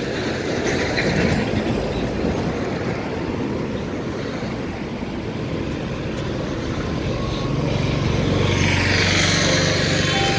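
Passenger train coaches rolling along the tracks, a steady rumble of wheels on rail that grows louder in the last few seconds.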